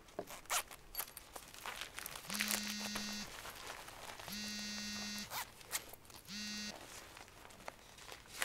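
A zipper on a leather briefcase or document bag being pulled open in three buzzing strokes, the last one short, with light clicks and rustles from handling the bag.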